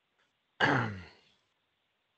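A person clearing their throat once: a single short burst that starts sharply about half a second in and fades away within about a second.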